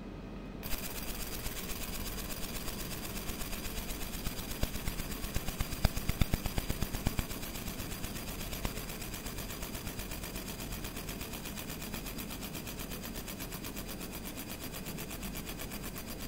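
50 W JPT MOPA fiber laser engraving a mirror-polished stainless steel dog tag: a fast, even crackle of the pulsed beam ablating the metal, starting about a second in, with a thin steady high tone under it. The crackle grows louder and sharper for a few seconds around the middle.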